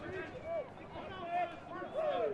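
Several voices calling out at a distance, overlapping: spectators and players shouting during play, with no one voice close to the microphone.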